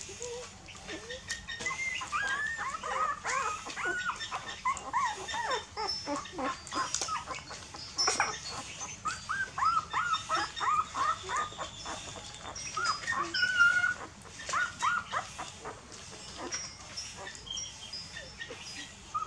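Young puppies squeaking and whimpering while they suckle from their mother: many short, rising-and-falling cries that overlap in quick succession, thickest through the middle and thinning out near the end.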